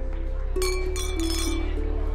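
Wine glasses clinking together in a toast: several quick clinks with a bright ringing tone, from about half a second to a second and a half in. Soft background music with sustained low notes plays under them.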